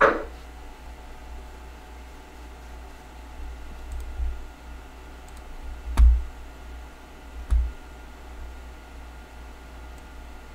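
A few scattered computer mouse clicks, some with a dull thud on the desk, over a steady low hum.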